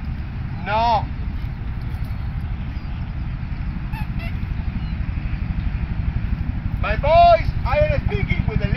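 Short honking calls: one about a second in, then several close together near the end, each briefly rising and falling in pitch, over a steady low rumble.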